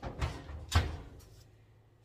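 A cake pan being put into a kitchen oven: a few metal clunks from the oven door and rack, the loudest a heavy knock about three-quarters of a second in.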